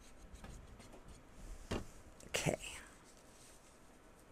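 Quiet paper handling: a squeeze bottle of tacky glue applied to torn book-page scraps and the paper pressed and rubbed flat on a cutting mat, with faint rustles and a soft tap just under two seconds in.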